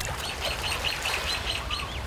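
A small bird calling a quick run of short, falling whistled notes, about five a second, over a low background rumble.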